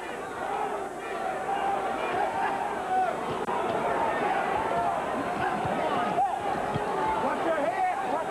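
Arena crowd at a boxing match cheering and shouting, many voices at once in a steady din.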